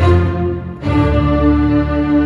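Amplified cello playing long bowed notes over a sustained low bass, with a short dip and a new held note starting just under a second in.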